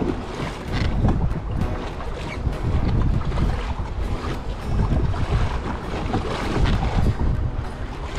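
Strong wind buffeting the microphone, with choppy seawater slapping and splashing against the hull of a moving kayak.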